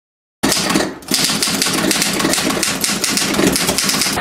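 A rapid run of clicks, like a sound effect, starting after a brief silence and dipping for a moment about a second in.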